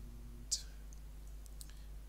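A few soft computer mouse clicks, the sharpest about half a second in, over a faint steady electrical hum.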